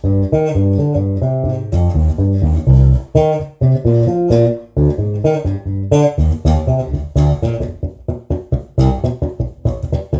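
Electric bass guitar played fingerstyle: a steady, continuous run of plucked notes, several a second.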